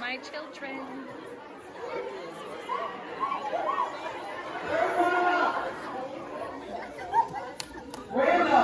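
A woman speaking over a microphone and PA in a large hall, with audience chatter underneath.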